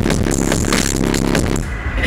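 Loud dubstep played through a festival stage sound system, recorded with a handheld camera's microphone that makes it sound distorted. Near the end the high end drops out for a moment.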